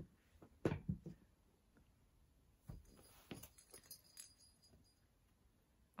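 A cat batting a cardboard scratcher-roll toy over on carpet: a few soft knocks and thumps as it tips and rolls away, with near quiet between them.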